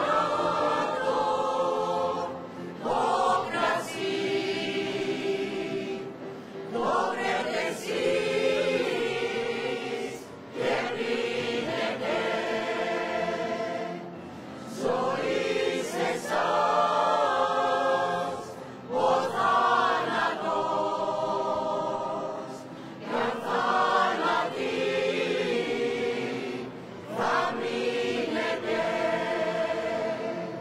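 A choir singing, in phrases of a few seconds each with short breaks for breath between them.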